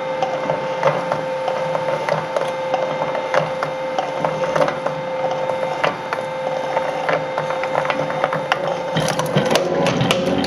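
Shredder's rotating cutter discs chewing used steel oil filters. A steady motor whine runs under a constant irregular crackle of metal cracking and crunching. The crunching turns into a denser burst about nine seconds in as one filter is crushed and torn open.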